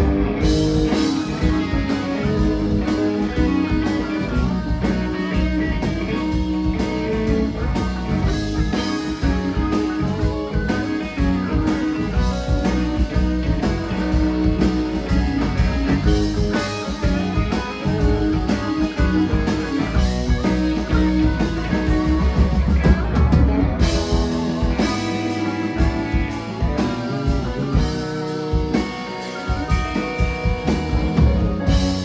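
Live rock band playing an instrumental passage: electric guitars, electric keyboard and drum kit, with no singing. The low end thins out for a few seconds near the end before the full band comes back.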